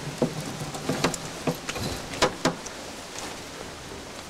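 Hands working a net over dry leaf litter: irregular crackles and snaps of leaves and netting, thicker in the first half and thinning out near the end.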